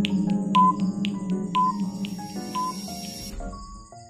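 Countdown-timer sound effect over background music: steady clock-like ticks with a short beep about once a second, marking the seconds left to answer. The music thins out and fades near the end.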